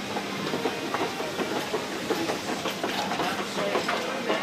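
Steady mechanical rumble of a London Underground station, with a continuous low hum and scattered faint clicks and clatters from escalator and rail machinery.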